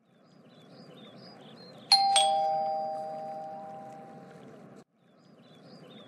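Two-note ding-dong doorbell chime about two seconds in, a higher note then a lower one, ringing out and fading over a couple of seconds over a faint background hiss.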